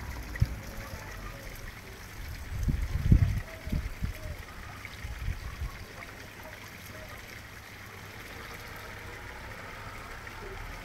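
Water trickling steadily from a pipe under a flat stone into a shallow concrete garden pond. A few low thumps on the microphone come in the first half, the loudest about three seconds in.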